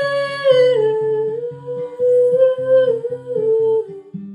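A woman's voice holding a long wordless sung note that steps down in pitch a few times, over fingerpicked acoustic guitar.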